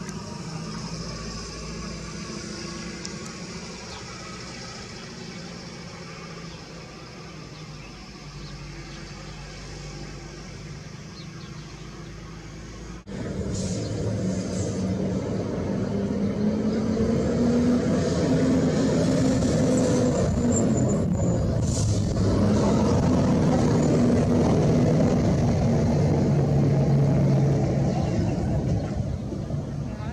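A low, steady engine-like rumble. It jumps louder after an abrupt cut about halfway through, with a slowly wavering pitch, then eases off near the end.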